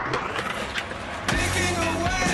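Skateboard wheels rolling on concrete with scraping and clacks from the board. About a second and a half in, music starts over it.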